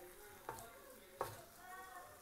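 Wooden spatula stirring and scraping grated coconut cooking with sugar in a steel pan, faint, with two light knocks about half a second and just over a second in.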